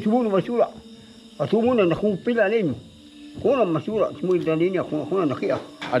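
An elderly man's voice praying aloud in his own language, in three phrases with short pauses between, over a steady background of crickets.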